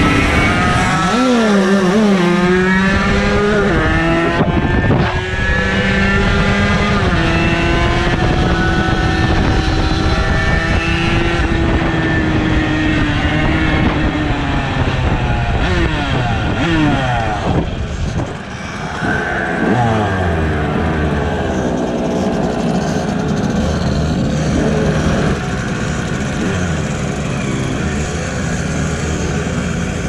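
50cc moped engines running under way, with wind noise: the revs climb and drop with gear changes in the first few seconds, then hold steady while cruising. A little past halfway the revs fall away as the moped slows, and the engine runs on at lower revs to the end.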